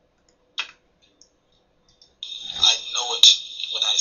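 A single click, then about a second and a half of near silence, then a man's speech resuming over a steady high-pitched hiss.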